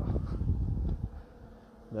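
A low buzzing rumble, strongest in the first second and then fading away.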